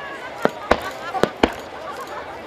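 Aerial fireworks shells bursting, four sharp bangs in quick succession over about a second.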